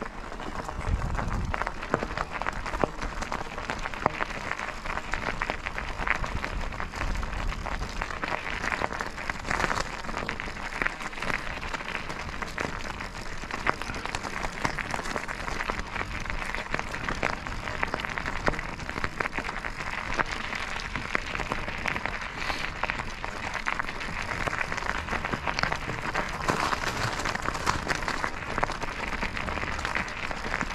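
Bicycle tyres rolling over a gravel grade: a continuous dense crackle of crunching stones.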